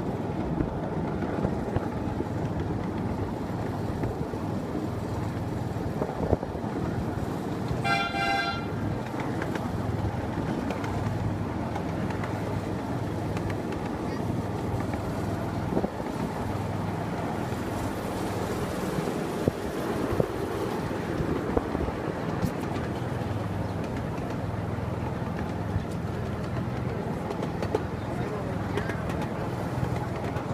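Miniature railway train running along its track with a steady low rumble, its horn giving a short toot about eight seconds in.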